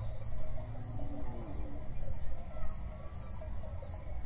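Insects chirping in a steady rhythm of short, repeated high pulses, over a low rumble.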